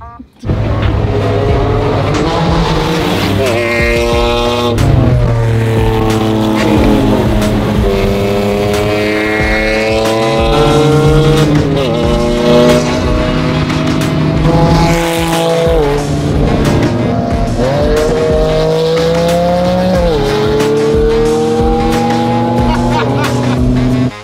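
Sports-car engine accelerating hard from inside the cabin. Its pitch climbs and then drops back at each of several upshifts.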